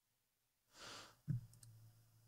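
A short, faint breathy exhale into a desk microphone, then a sharp click with a low hum trailing after it and a fainter second click.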